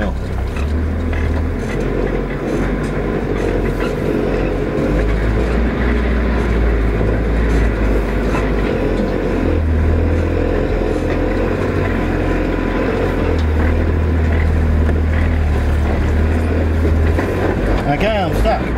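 Manual 4WD's engine pulling steadily in first gear low range as it climbs a steep hill, heard from inside the cab. The low engine note swells and eases as the load changes.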